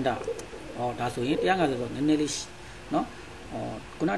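A man speaking: ongoing narration with no other clear sound.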